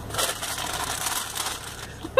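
Brown paper takeout bag crinkling and rustling as it is handled and lifted.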